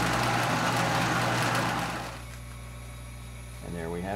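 Drill press running with its twist drill cutting into a metal bar, a dense hiss for about two seconds; then the cutting stops and the motor runs on with a steady low hum.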